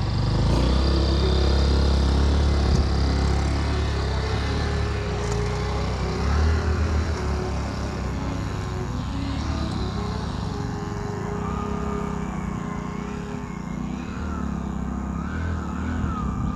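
Motorcycle engine running and revving hard in soft sand where the bike had got stuck, loudest in the first few seconds, then running more evenly as it pulls away.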